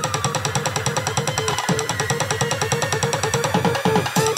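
Music with a fast, steady beat.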